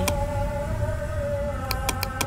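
Computer mouse clicks, one at the start and three in quick succession near the end, over a steady low room hum and a faint held tone.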